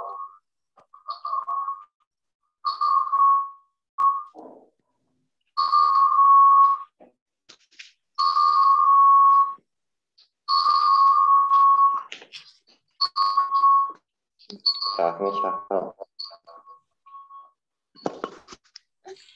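A repeated steady electronic tone, ringtone-like, sounding in a run of beeps about a second long each with short gaps, heard through the video call's audio.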